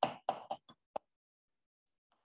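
Chalk tapping and scratching on a blackboard as symbols are written: about five short, sharp strokes in quick succession within the first second.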